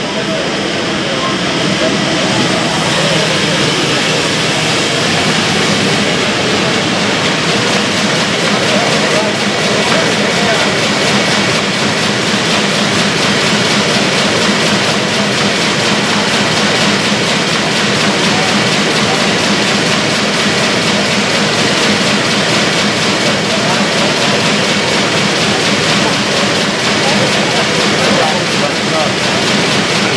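Sheet-fed offset printing press running at speed, a steady, dense mechanical whir and clatter of sheets feeding through. It builds slightly in the first couple of seconds, then holds even, with voices murmuring beneath it.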